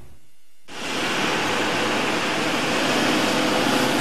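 A biodiesel-fuelled pickup truck camper driving along a road: a steady rushing sound of engine and tyre noise. It starts about half a second in and grows slightly louder.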